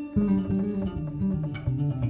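Jazz piano trio music: a plucked bass comes in strongly just after the start, playing low notes under piano chords.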